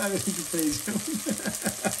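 Onions and green pepper frying in oil in a nonstick pot, sizzling steadily while a silicone spatula stirs them in many quick, short strokes. The onions are being sautéed until they take on colour.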